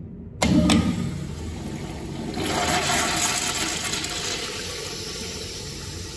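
Eljer urinal flushed by its flush valve: a sudden burst as the valve opens about half a second in, then water rushing through the bowl, swelling about two seconds in and slowly tapering off.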